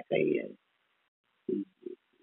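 Speech only: a man says one drawn-out word, then pauses. Two brief, low hesitation sounds from his voice come near the end.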